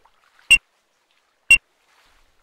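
Two short, high electronic beeps from a race start countdown timer, one each second, about half a second in and again a second later, with near silence between them.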